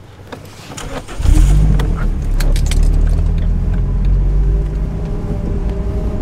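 Car engine started with the key: a few jangles and clicks, then the engine catches about a second in and settles into a steady idle, with a few more clicks while it runs.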